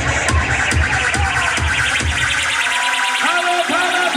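Live dubstep set: electronic dance music with a steady kick-and-bass beat and fast high ticking. The beat drops out about two-thirds of the way in, leaving gliding, swooping synthesizer notes.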